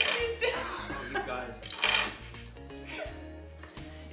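A small group laughing, loudest at the start and again about two seconds in, with spoons and forks clinking against cups and a tabletop.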